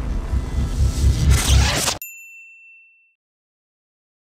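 Outro music sting with a heavy bass pulse that swells and then cuts off abruptly about halfway through. A single bright, clean ding rings out and fades away over about a second.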